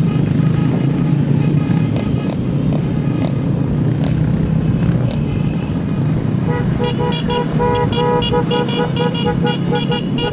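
Motorcycle engine running steadily under the rider, with wind and road noise, among other motorcycles riding alongside. From about halfway through, a horn toots rapidly and repeatedly in a quick rhythm.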